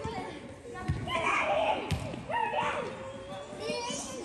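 Players and spectators calling and chattering in an indoor arena, with two thumps about a second apart from the soccer ball being kicked or striking the boards.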